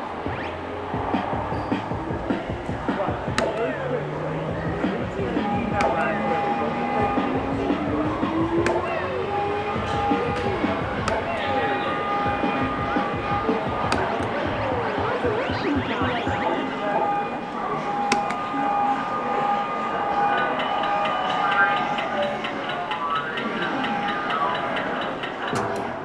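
Arcade ambience: electronic music, beeps and jingles from the game machines, with a tone that rises slowly over several seconds early on, and background chatter.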